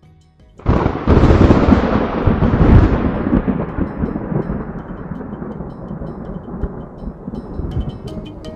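A loud, rolling thunder-like rumble sound effect: it starts suddenly under a second in, swells over the next two seconds, then dies away slowly, growing duller as it fades. Music comes back in near the end.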